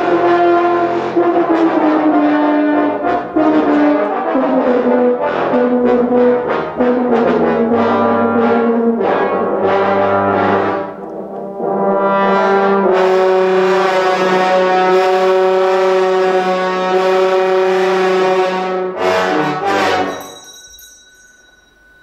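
An ensemble of trombones, bass trombones and tubas playing, with phrases stepping downward in the first half. Then comes one long held chord that stops about two seconds before the end, leaving only faint room sound.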